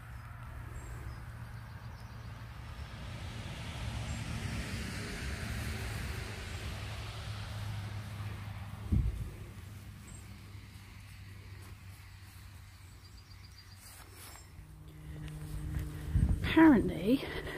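A vehicle going by, its noise swelling over a few seconds and then fading, over a steady low hum, with a single dull thump about nine seconds in.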